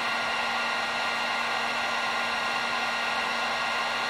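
Electric heat gun running steadily, blowing hot air: an even rush of air with a faint fixed whine from its fan motor.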